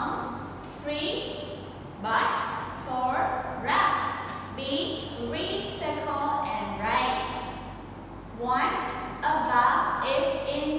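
Only speech: a woman talking in phrases throughout, with short pauses between them.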